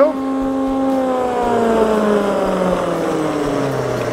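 Cooperage stave-shaping machine, its rotating cutter knives and rollers running with a steady hum; about a second in the pitch starts to fall steadily as the machine winds down.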